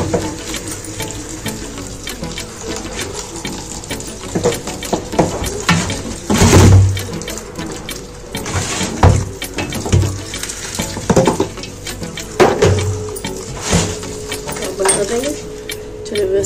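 Boiled rice and its cooking water poured from a steel pot into a steel colander in a stainless-steel sink, the water splashing and draining. A string of loud metal-on-metal knocks comes in the middle part, the loudest about six and a half seconds in.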